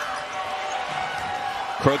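Basketball game court sound: a basketball dribbled on the hardwood over an even hum of arena crowd noise.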